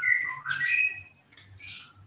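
A bird chirping and squawking: a few short whistled notes sliding in pitch during the first second, then a brief hissy squawk near the end.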